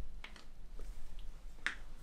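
A joint in the hand cracking as a chiropractor pulls and manipulates it: a few faint clicks, then one sharper pop near the end.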